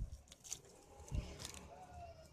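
Quiet handling sounds: two soft low thumps, one at the start and one about a second in, with a few faint clicks and rustles as a hand works in the dry fibres and fern growth on an oil palm trunk.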